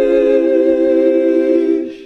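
The drawn-out 'eee' of the 'heavenly sheesh' meme sound effect: several voices holding a steady choir-like chord, which fades out near the end.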